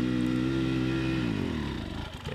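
Dirt bike engine held at high revs as the rider pushes through deep, soft mud, then easing off about one and a half seconds in.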